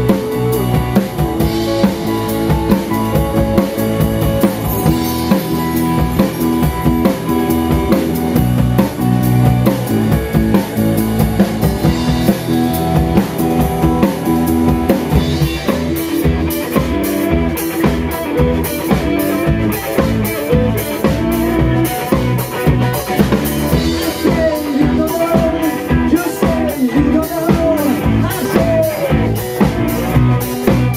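Live rock band playing: electric guitars, bass guitar and a drum kit keeping a steady beat. From about halfway the cymbals come through more strongly, and near the end a lead line with bending pitch rides over the band.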